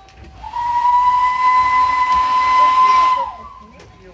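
Steam locomotive's whistle blown once for about three seconds: a loud steady high tone with a hiss of steam, starting low and weak, then dipping in pitch as it cuts off.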